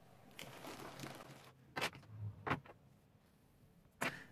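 Small objects being handled on a tabletop: a soft rustle, then two sharp clicks with a dull knock between them.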